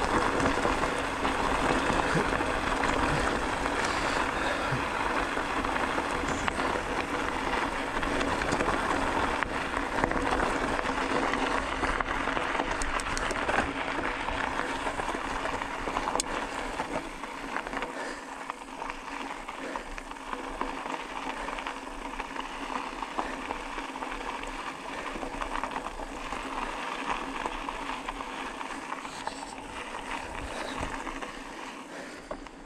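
Bicycle tyres rolling over a loose gravel dirt road, giving a steady rumble of tyre and road noise. It eases off a little about halfway through.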